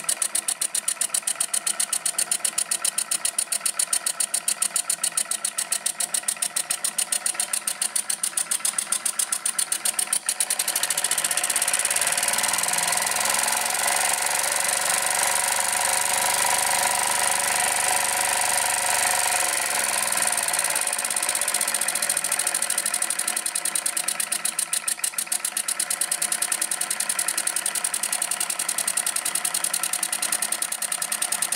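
Homemade single-cylinder steam engine, built on a 1970s Cadillac air-ride compressor, running on steam with a fast, even beat of exhaust chuffs. About ten seconds in, a steady hiss of steam takes over and the beat blurs together. The separate chuffs come back about 24 seconds in.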